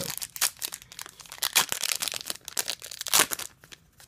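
Foil trading-card booster pack being torn open by hand, its wrapper crinkling and crackling, with louder rips about a second and a half in and again near the three-second mark.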